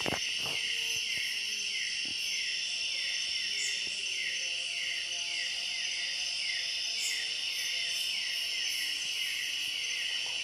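Night insect chorus of crickets: a dense, steady high trill, with a short falling chirp repeating about two or three times a second.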